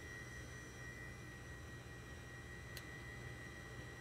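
Faint steady electrical hum with a thin, steady high-pitched whine over a light hiss: the background noise of the recording, with no other sound.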